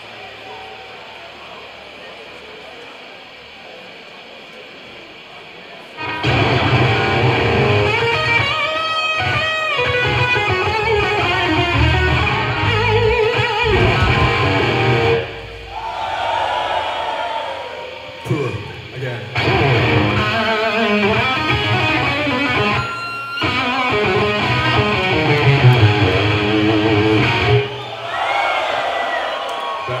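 Heavy metal band playing live: distorted electric guitars, bass and drums with vocals. The full band comes in loudly about six seconds in after a quieter stretch with a steady hum, dips briefly twice in the middle, and ends with a rising guitar squeal near the end.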